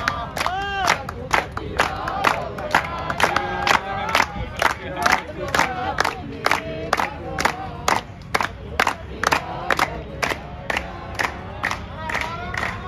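A seated crowd chanting together in loud group shouts while clapping in a steady rhythm, about two to three claps a second.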